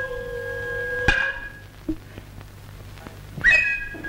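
Kabuki hayashi ensemble: a nohkan bamboo flute holds a high, steady note over a long drawn-out vocal call. A sharp drum stroke comes about a second in and another near the end.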